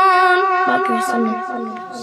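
A boy sings a Kashmiri naat unaccompanied, holding a long note with a wavering vibrato that tapers off about half a second in. A softer, lower voice carries on after it as the level falls away.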